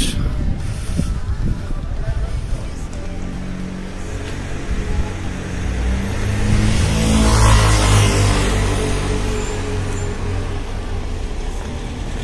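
A car passes along the street. Its engine and tyre noise rises to a peak about seven to eight seconds in, then fades.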